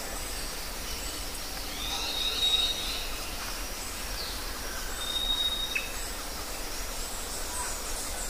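Forest ambience with birds calling: scattered short, high, falling chirps and two long thin whistles about two and five seconds in, over a steady low rumble.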